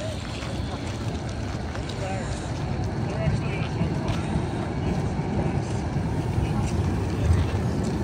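Berlin tram rolling past close by, a low rumble that slowly grows louder, with the voices of passers-by in the background.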